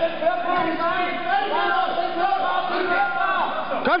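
Several voices shouting and cheering at once, overlapping, as spectators and coaches urge on karate fighters.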